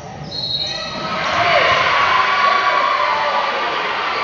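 Gym sounds during a basketball game: a ball bouncing on the hardwood court with voices in the hall. A brief high tone comes near the start, and the sound gets louder about a second in.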